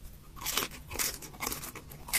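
Close-miked eating: chewing and crunching food, heard as a rapid, irregular run of crisp clicks and short wet bursts.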